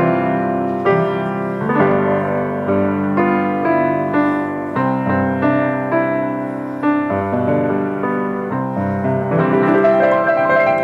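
A Yamaha G2 grand piano being played slowly: sustained chords and melody notes, with a new chord struck about once a second.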